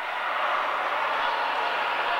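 Steady din of many voices from the crowd and players in a futsal sports hall, all mingling with no single voice standing out, in reaction to a disputed goal.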